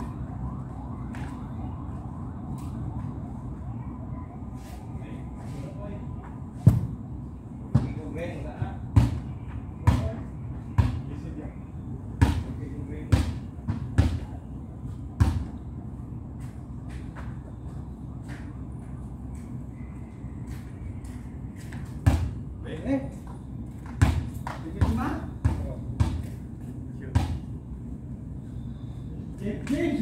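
A basketball bouncing hard on concrete: two runs of sharp thuds roughly a second apart, in the first half and again in the second, over a steady low background rumble.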